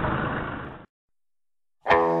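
Steady drone of a yacht's engine with wind and sea noise, fading out within the first second, then a second of dead silence before guitar music starts near the end.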